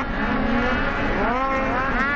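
Several racing snowmobile engines revving, their pitch climbing twice as riders accelerate along the track, over a steady lower engine drone.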